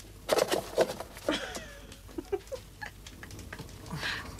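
Manual butterfly can opener biting into a tin can, with a run of sharp metallic clicks in the first second. This is followed by a short falling squeak and a few brief squeaks as the cutter works around the lid.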